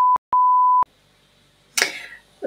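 A steady, pure, high-pitched censor bleep laid over speech, in two parts. The first cuts off just after the start, and after a brief gap a second bleep lasts about half a second. Then it goes silent.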